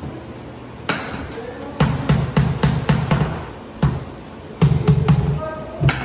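Rubber mallet knocking prefinished engineered white oak floorboards down and into place: quick runs of dull thuds, about five a second, in bursts with short pauses, starting about two seconds in.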